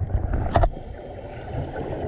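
Underwater noise picked up by a diver's camera: a low, steady rumble of water against the housing, with a short burst about half a second in.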